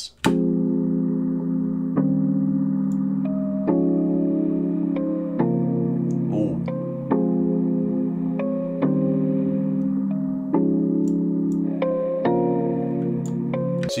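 A melody loop played back through the Cableguys HalfTime plugin, slowed to half-time. It is heard as sustained, dull-toned chords with little treble, changing about every 1.7 seconds.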